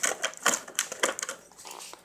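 Quick irregular clicks and crackles of a clear plastic blister tray as a die-cast Hot Wheels car is pried out of its slot. The clicking dies down after about a second and a half.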